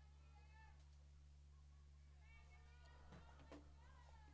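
Near silence: a low steady hum with faint, distant voices now and then.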